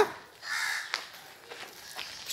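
A brief harsh bird call about half a second in, followed by a single sharp click about a second in.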